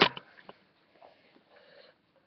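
Mostly quiet, with a few light taps as small plastic toy figurines are handled and set down on a hard tiled floor.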